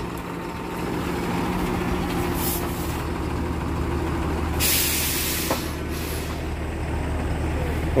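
Diesel truck engine running steadily, its low hum growing stronger about three seconds in as the truck is set moving. About halfway through comes a short, sharp hiss of air from the truck's air brakes.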